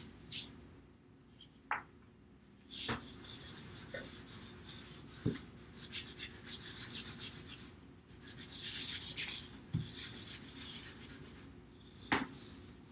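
Crayons rubbed on their sides across construction paper, a faint scratchy rasp in uneven strokes of shading, with a few light knocks against the table.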